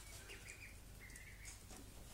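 Ducklings peeping faintly: a few short, thin, high calls, one of them held for about half a second near the middle.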